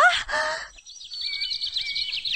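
Small birds chirping in quick, repeated short calls, starting about a second in. This is outdoor birdsong ambience. Just before it, a woman's voice ends on a drawn-out, rising word.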